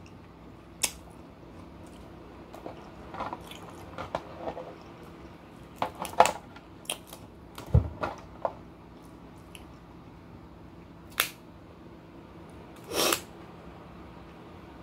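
Snow crab leg shells being cracked and snapped apart by hand, with scattered sharp cracks and crunches that come irregularly, along with chewing. The louder snaps fall around six, eight and eleven seconds in, with a longer crackle near the end.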